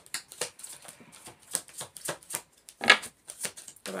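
A deck of tarot cards being shuffled by hand, the cards flicking and slapping against each other in a quick, irregular run of short clicks, the loudest about three seconds in.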